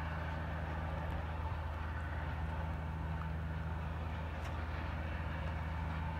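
An engine idling steadily nearby: a constant low hum that does not change in pitch.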